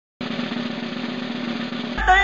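A drum roll that starts abruptly just after the beginning and is held at an even level throughout.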